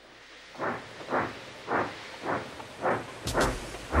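Steam locomotive chuffing steadily, a short puff about every half second.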